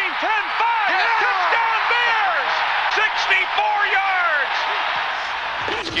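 A radio play-by-play announcer calling a long touchdown run in a high, excited voice, counting down the yard lines, over the steady noise of a cheering stadium crowd.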